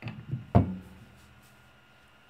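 Whiskey glasses set down on a table: a couple of knocks, the loudest about half a second in with a short ring after it, then a few faint clicks.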